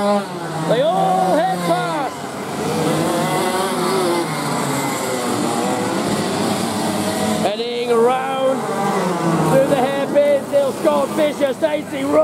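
Several 125cc two-stroke racing kart engines revving, their pitch rising and falling over one another as the karts brake and accelerate through the corners. The sound breaks off briefly about seven and a half seconds in, then more kart engines take over.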